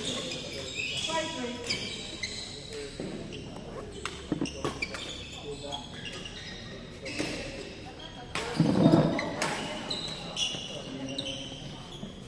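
Badminton rally in a sports hall: sharp cracks of rackets striking the shuttlecock at irregular intervals of a second or two, with indistinct voices of players echoing in the hall and a loud voice about nine seconds in.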